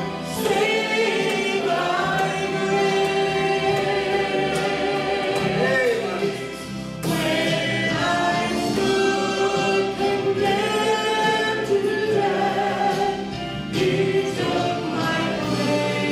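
A woman singing a gospel song into a handheld microphone, holding long notes, one of them wavering with vibrato about six seconds in.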